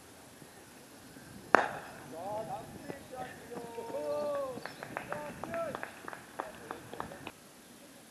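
A cricket bat strikes the ball with one sharp crack, followed by players shouting calls across the field and a short run of sharp claps near the end.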